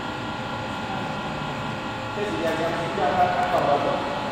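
Spindle motor spinning steadily at high speed during a balance check: a steady hum with several fixed whining tones. Its pulley is balanced within the standard vibration reading.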